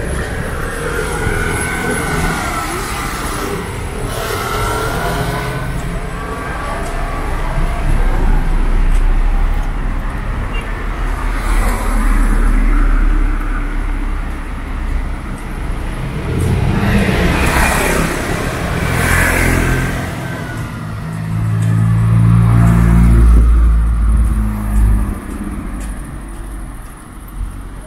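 Road traffic: cars and motor scooters driving past one after another, with a car engine running close by in the last few seconds.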